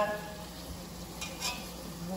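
Ground beef sizzling faintly in a frying pan, with a short scrape of a spatula in the pan about a second and a half in.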